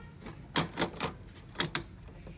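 Sharp plastic clicks and taps from printheads being worked in and out of an HP Smart Tank inkjet printer's carriage. About five quick clicks come in two clusters, the first about half a second in and the second past the middle.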